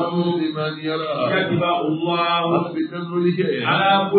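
A man's voice chanting a religious recitation into a microphone, in held, melodic syllables.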